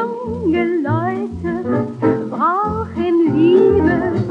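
Song played from a digitized 78 rpm gramophone record: an estrada orchestra accompanying a melody line that swoops up and down in pitch, with no sung words.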